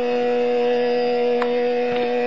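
Hindustani classical music in Raag Amritvarshini: one long note held perfectly steady in pitch by voice and harmonium, with no drum strokes.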